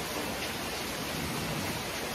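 Steady, even rushing background noise with no speech.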